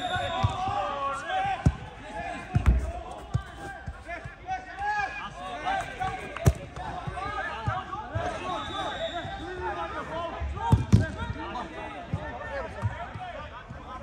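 A football being kicked and passed, a few sharp thuds spread seconds apart, over indistinct shouting and calling from the players throughout.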